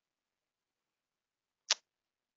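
Near silence on a gated webinar microphone, broken by a single short, sharp click near the end.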